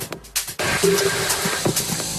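Minimal techno from a DJ mix: the track drops almost out for about the first half second. It then comes back with a hissing noise wash, sparse clicks and a short low synth note.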